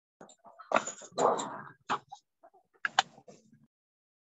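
Short, irregular animal calls coming through a video-call microphone, several in a row over about three seconds, then cut off abruptly by the call's audio gating.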